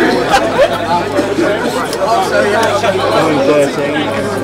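Several people chatting at once, overlapping voices with no clear words, over a steady low hum. One sharp click comes shortly after the start.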